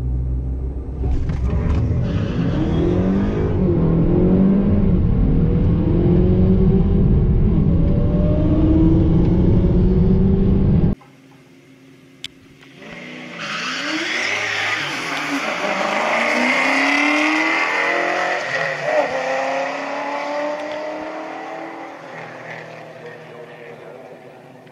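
Drag-race run heard from inside a Honda Accord Sport 2.0T: the turbocharged four-cylinder's revs climb and drop again and again through quick upshifts of the 10-speed automatic, over a heavy low rumble, and the sound cuts off suddenly about eleven seconds in. Then engines are heard loud from the trackside, their pitch sweeping up through gear changes as the cars run down the strip, and fading away near the end.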